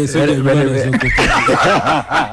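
A man laughing: a drawn-out voiced sound, then from about a second in a quick run of chuckling bursts, about five a second.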